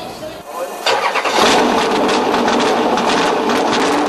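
Engine of a 1976 Chevrolet Monza race car built by DeKon Engineering starting up about a second in, then running loud and steady.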